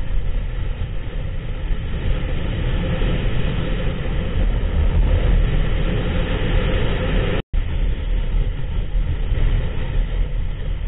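A motorcycle ridden at road speed: steady engine and wind noise on a bike-mounted camera. The sound cuts out briefly about seven and a half seconds in.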